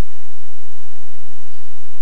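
Steady hiss with a low hum underneath: the recording's background noise in a gap between speech.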